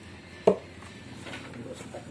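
A single sharp knock about half a second in, from a hand handling a large 24-inch woofer's frame; otherwise only faint room noise.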